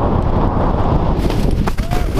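Wind rushing over a moving action-camera microphone while skiing, mixed with skis sliding and scraping on snow, with a couple of short knocks in the second half.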